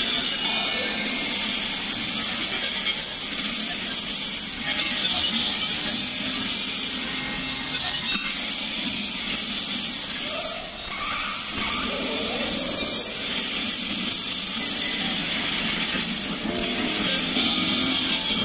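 Electronic music from Reason synthesizers: a dense, noisy synth texture with almost no bass. Swells of airy hiss come and go, and a few gliding tones rise about midway.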